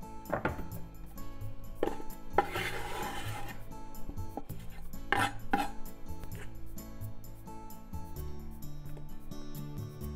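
A knife scraping minced garlic off a wooden cutting board into a metal frying pan, with a few sharp clinks and knocks of utensil on pan and board and one longer scrape about two to three seconds in, over soft background music.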